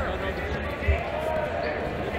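Background voices of coaches and spectators in a wrestling venue, with a dull low thud about a second in.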